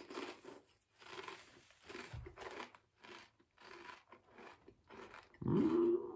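A thick, hefty kettle-cooked potato chip being chewed: crisp crunches about once a second. Near the end a closed-mouth hummed "mm" comes in.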